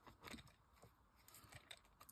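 Near silence, with a few faint light ticks of a pokey tool pushing die-cut bits out of a cardstock panel.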